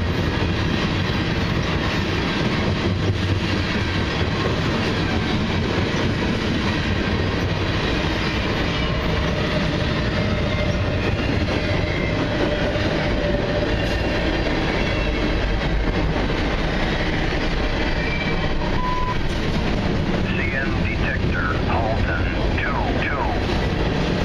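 Freight train's tank cars rolling past, a steady rumble and rattle of wheels on rail. After a short tone about 19 seconds in, a trackside defect detector's automated voice starts its readout over the train noise near the end.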